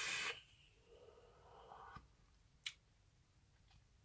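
Someone vaping: a breathy hiss cuts off just after the start, followed by a fainter breathy exhale and a single soft click.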